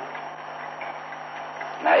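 Pause in an old, narrow-band tape recording of a monk's sermon: steady hiss with a constant low hum, then the monk's voice resumes near the end.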